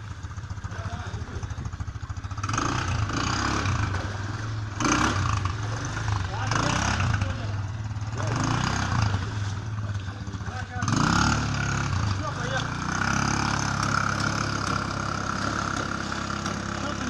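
IRBIS 200 quad bike's engine running steadily and revving up in several surges, louder from about eleven seconds in, as it is pushed and driven out of deep mud and water.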